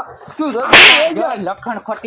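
A single loud, sharp smack, about a third of a second long, comes roughly three quarters of a second in and is the loudest sound here. It is a hit in a staged scuffle, with voices around it.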